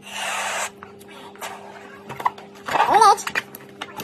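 A breath blown into a water-filled latex balloon: a short rush of air lasting under a second, followed by light rubbing and squeaking of the rubber as the balloon's neck is handled, with a brief rising-and-falling pitched sound about three seconds in.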